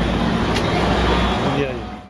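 Steady street noise with a low engine rumble from road traffic, and a brief voice saying "yeah" near the end.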